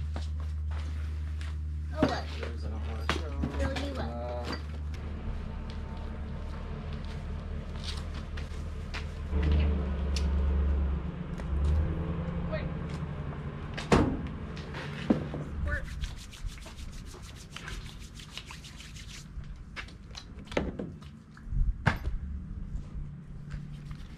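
A steady low mechanical hum that weakens about two-thirds of the way through, with a few sharp knocks and handling noises and some faint speech.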